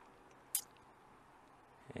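Faint room tone with a single short, sharp click about half a second in.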